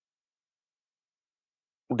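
Dead silence, then a man's voice begins speaking near the end.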